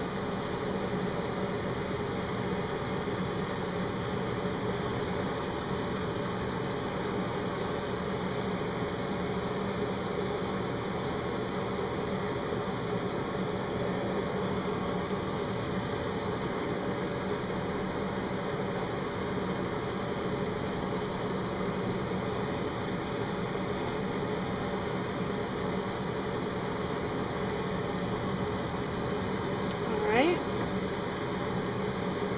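Steady, even hiss that holds at one level throughout, with no separate sounds on top of it.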